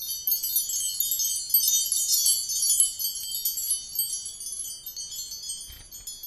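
Chimes ringing: many high, overlapping tones that start suddenly and cut off abruptly at the end.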